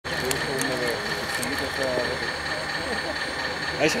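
People talking over the steady high whine of a radio-controlled O&K model excavator working its arm.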